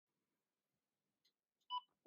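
One short electronic beep from a Pioneer home telephone as a button on its console is pressed, near the end; before it, near silence with a faint tick.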